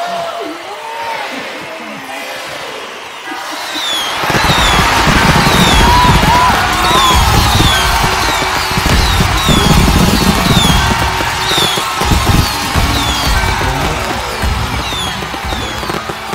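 Voices over a countdown, then, about four seconds in, loud fireworks bursting with music: repeated bangs and a run of short descending whistles that carry on to the end.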